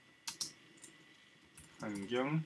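Typing on a computer keyboard: a couple of sharp key clicks about a quarter second in, then a few fainter keystrokes. Near the end a short hesitant voiced sound begins.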